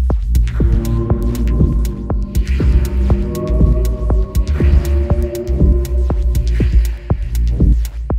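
Dub techno track: a deep, steady sub-bass throb under a sustained chord, with soft ticking percussion and a hissing swell about every two seconds.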